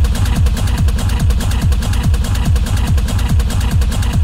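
Hard Chicago techno playing: a heavy four-on-the-floor kick drum, each beat dropping in pitch, about two beats a second, under fast hi-hats.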